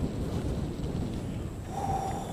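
Wind buffeting the camera microphone, a steady low rumble. A faint steady tone comes in near the end.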